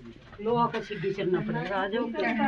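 People talking close by in a crowd, voices starting about half a second in.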